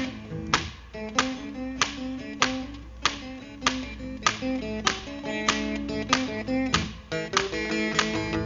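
Blues guitar playing an instrumental break: a repeating riff of plucked notes over a sharp, steady percussive beat about every 0.6 seconds.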